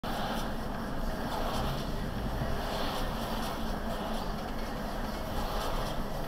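Steady road and engine noise of a car driving slowly, heard from inside the cabin: an even rumble and hiss with no sharp events.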